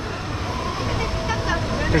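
Steady outdoor background noise with faint voices of other people, and a man's voice starting a word at the very end.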